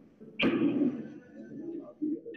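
A single sharp click of pool balls striking, about half a second in, ringing out briefly in a large hall over a faint background murmur.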